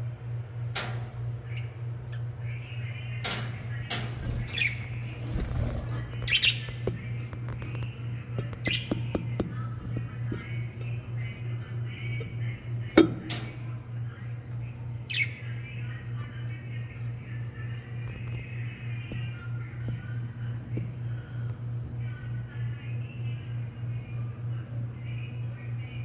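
Budgerigars chirping and chattering, with sharp calls several times in the first half and a loud sharp click just past halfway, over a steady low hum.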